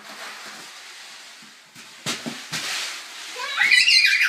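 A toddler's high-pitched excited squeal near the end, loud and rising, after a couple of soft knocks a little past halfway.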